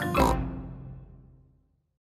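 A cartoon pig's oink just after the start, over the last chord of a children's cartoon theme tune, ringing out and fading to silence in about a second and a half.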